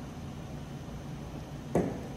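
Steady low hum of the room, with one brief short sound near the end.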